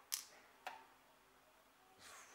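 Two short clicks about half a second apart near the start as roasted coffee beans are dropped one at a time onto a pile of beans on a small digital scale's tray.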